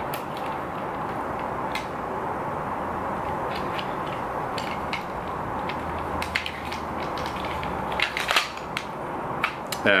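Scattered sharp plastic clicks and handling noises from a wheelchair joystick's plastic housing being prised apart and turned in the hands, over a steady background hiss; the clicks come thicker near the end.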